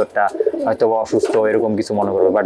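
Racing pigeons cooing, mixed with a voice.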